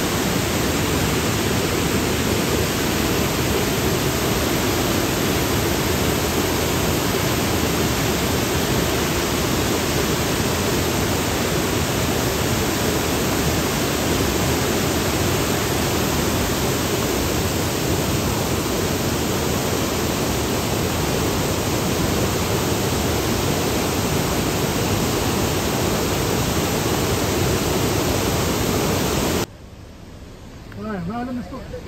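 Waterfall in full flow, white water cascading over rock steps: a loud, steady rush that cuts off suddenly near the end.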